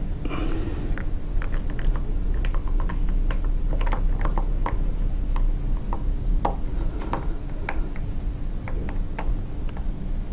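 Thick plaster slurry pouring from a plastic bucket into an alginate mould: a run of irregular small clicks and plops, several a second, over a steady low hum.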